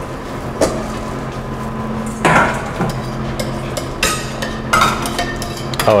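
Stainless-steel cookware clanking: a skillet and a mesh strainer knocking against a steel mixing bowl while the skillet's contents are poured through the strainer, about five sharp clanks spread out over a steady low hum.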